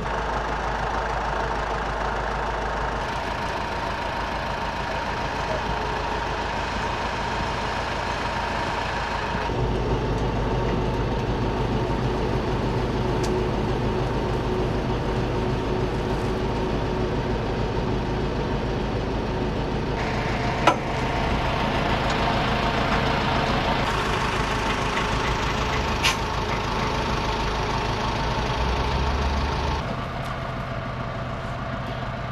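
Engine of a truck-mounted aerial work platform running steadily. Its tone and level shift abruptly a few times. Two sharp clicks come about two-thirds of the way through, about five seconds apart.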